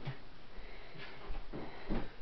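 A person sniffing a couple of times, short noisy breaths about a second in and near the end, over faint handling of cardboard jigsaw pieces on a wooden table.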